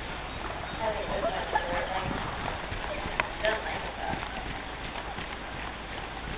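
A horse's hoofbeats on the soft dirt footing of an indoor arena as it moves around on a lunge line, with a person's voice between about one and four seconds in and a few short sharp clicks.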